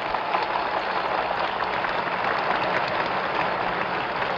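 A large crowd applauding steadily, a dense clatter of clapping in the pause of a speech, heard on an archival recording played from a vinyl record.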